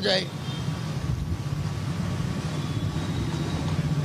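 A steady low rumble of a running engine.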